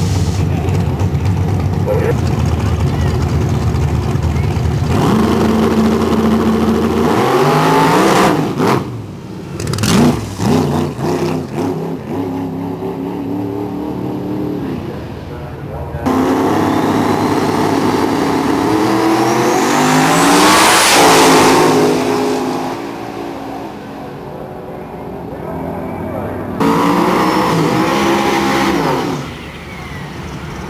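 Drag-racing engines at the starting line, idling loudly and steadily at first. They are then revved hard in repeated rising and falling sweeps, with a long climbing rev that peaks about two-thirds through. Another short rev comes near the end, as a car does a burnout.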